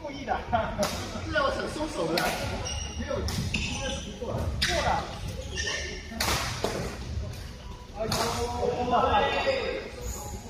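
Voices talking in a large echoing sports hall, broken by several sharp hits that fit badminton rackets striking shuttlecocks.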